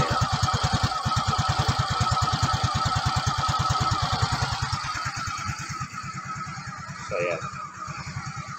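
Yamaha Mio Gear scooter's fuel-injected single-cylinder engine idling after a cold start, a rapid even putter that gets quieter after about five seconds. The idle is very low and shaky and sounds as if it is about to stall, which the owner takes for an abnormal fault: it idled higher when new.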